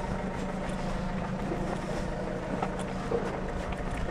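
A vehicle engine running steadily close by: a low, even drone with street noise around it.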